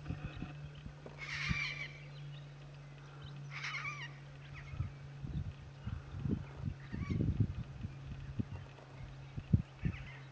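Pink cockatoo (Major Mitchell's cockatoo) giving two loud, wavering calls about two seconds apart in the first half, then fainter calls. Scattered low cracks and knocks run under a steady low hum.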